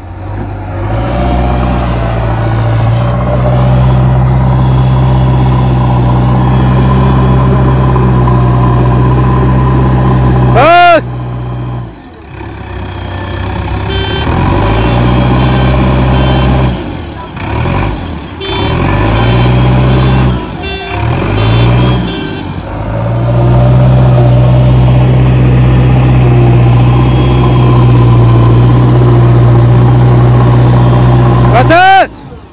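JCB 3DX Xtra backhoe loader's diesel engine working under load as the front bucket pushes into soil, held at high revs for long stretches and dropping and picking up again several times in the middle. A brief high squeal sounds about eleven seconds in.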